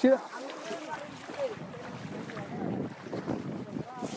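Faint, distant voices over wind noise on the microphone, with a brief loud bump right at the start.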